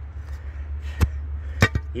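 A stick prodding and scraping through loose, stony soil, with a sharp knock about a second in and two more close together near the end, over a steady low rumble.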